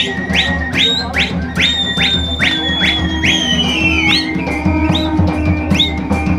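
Live Dogri folk music: a drum keeps a steady beat under a shrill, high flute-like melody of quick upward slides repeated about twice a second. Near the middle the melody holds one long high note that sags down, over a steady low drone.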